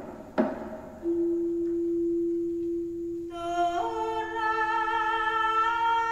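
Javanese court gamelan music with singing. Two struck metal strokes sound right at the start, then voices hold long sustained notes, a second fuller voice part joining a few seconds in and stepping up in pitch.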